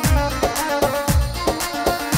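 Yarghoul, a double-pipe reed pipe with one melody pipe and one drone pipe, playing a dabke melody over its steady drone, with a regular drum beat keeping time.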